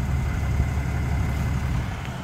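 Ram 2500's 6.7-litre Cummins inline-six diesel idling, a steady low rumble.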